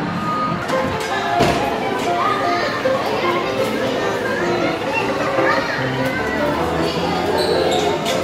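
Arcade din: electronic game-machine music and jingles in short held notes, with children's and adults' voices mixed in. A single knock about one and a half seconds in.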